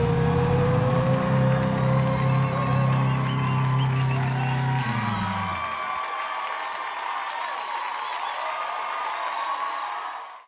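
A live rock band's final chord, with bass and guitar, sustaining and ringing out, then dropping away about five and a half seconds in. A studio audience applauding and cheering follows.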